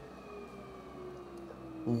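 DC motor driven as a generator, coasting down after being spun by hand: a faint whine that falls steadily in pitch as the shaft slows.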